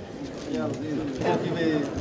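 Several people talking at once in a crowd, their voices overlapping, getting louder about halfway through.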